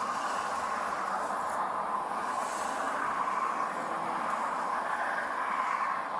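Steady, even hum and hiss of a vehicle engine idling, with a faint steady tone running through it.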